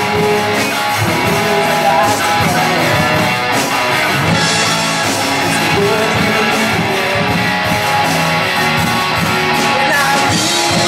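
Live rock band playing: electric guitars, bass guitar and drum kit, loud and steady.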